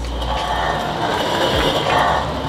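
A hand-cranked grain mill being turned, giving a steady mechanical grinding and rattling from its gears.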